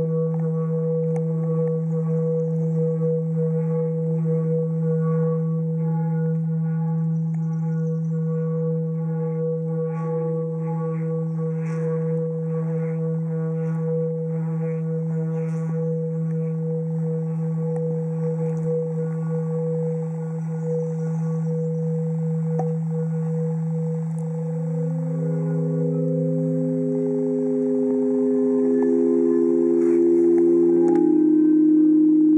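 A sound stone rubbed by hand along its edge, ringing with a steady low hum and a stack of overtones, pulsing in time with the hand strokes through the middle. About 24 seconds in, several higher notes join and the sound grows louder.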